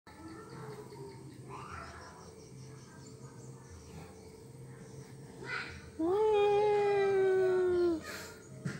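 Baby macaque crying: a few faint squeaks, then, about six seconds in, one loud, long wail that jumps up in pitch and sinks slowly over about two seconds.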